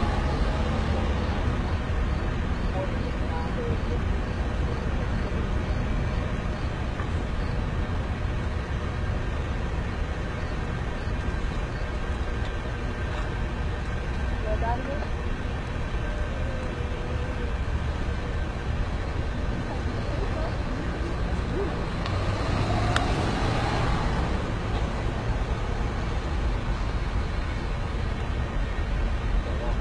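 Steady low rumble of outdoor street noise from vehicles, with faint indistinct voices in the background; the noise swells briefly a little over twenty seconds in.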